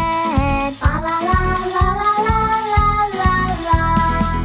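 Children's song: a child-like voice sings a line, holding one long note through the middle, over a backing track with a steady beat.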